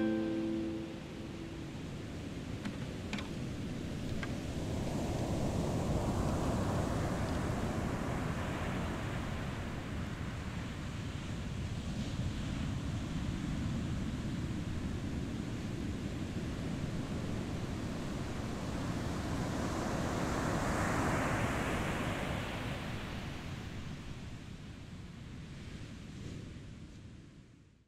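Ocean surf washing against a rocky shore: a steady rush that slowly swells and falls away twice. A final strummed acoustic guitar chord rings out briefly at the start.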